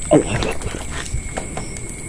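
A short cry that falls steeply in pitch just after the start, like an animal's whimper, over a steady high drone of night insects; a few light snaps and a dull thump from movement through the brush follow.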